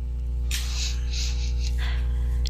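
Steady electrical mains hum on the recording, with two brief soft hisses, one about half a second in and one near the end.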